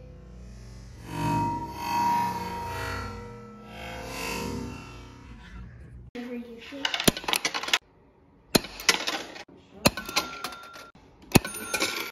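Background music for about six seconds, then it cuts off and a run of sharp mechanical clicks and clacks follows, with two short steady electric tones, from a vintage coin-operated shooting-gallery arcade game.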